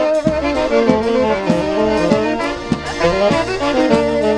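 Wedding band playing a lively instrumental tune: a wind-instrument melody over a steady drum beat.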